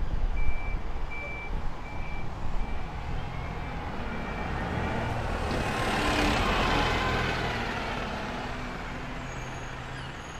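A single-deck diesel bus pulling away and passing close by, loudest about six seconds in, then fading as it drives off. A short high beep repeats about once a second through the first half.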